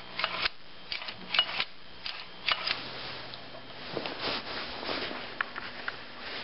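Scattered clicks and rattles of a plastic recoil (pull) starter housing being handled, with a longer rustle about two-thirds of the way through.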